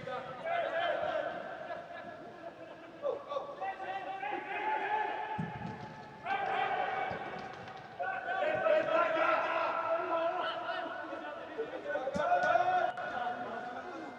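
Footballers' shouts and calls echoing around a large indoor hall, with a few sharp thuds of the ball being kicked.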